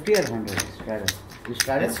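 Poker chips clicking against each other in a scatter of short, sharp clicks, under players talking at the table.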